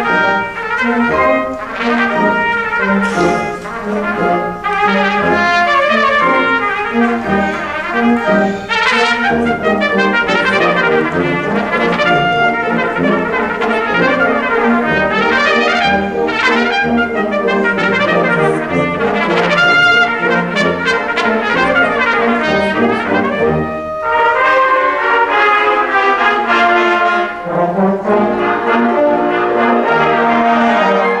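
Solo trumpet playing fast, virtuosic runs of notes over a full concert wind band accompaniment. The playing eases for a moment a little over three-quarters of the way through, then the solo and band carry on.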